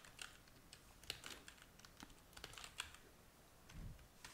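Faint, quick, irregular keystrokes on a computer keyboard as a line of code is typed.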